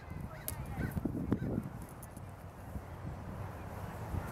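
Wind buffeting the microphone in gusts, with a few faint honking calls in the first second and scattered light clicks.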